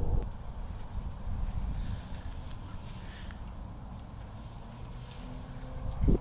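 Wind buffeting the microphone outdoors: an uneven low rumble that swells and dips.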